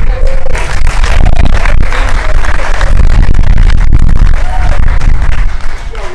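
Crowd applauding, with a few cheers, loud and dense throughout, over a steady low rumble.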